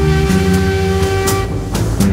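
Electronic music: a long held note over a pulsing bass line, with a cymbal-like hit about halfway through.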